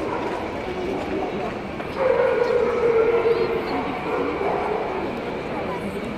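A dog vocalizing over the steady chatter of a crowd, with one long held call starting about two seconds in and lasting about a second and a half.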